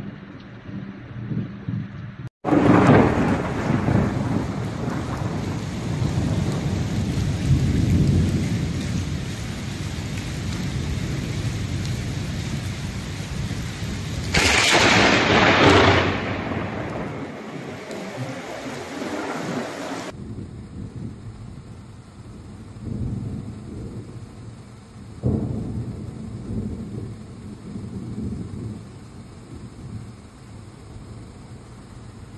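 A thunderstorm: heavy rain with repeated deep rolls of thunder. The loudest, sharpest burst comes about halfway through, and the last third is quieter, with one more sudden rumble.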